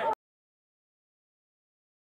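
Digital silence: a brief tail of crowd voices cuts off abruptly right at the start, and then there is no sound at all.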